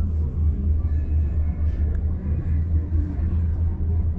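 Steady low rumble heard inside a moving La Paz Mi Teleférico gondola cabin as it runs along the cable.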